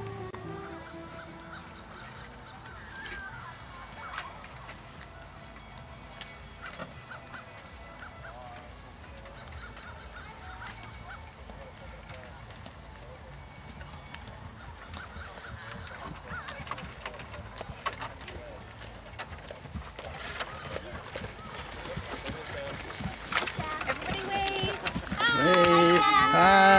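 Hoofbeats of a pair of draft horses pulling a passenger wagon, growing louder as the team comes close, under a thin steady high tone that stops about halfway. Near the end, people's voices from the wagon are the loudest sound.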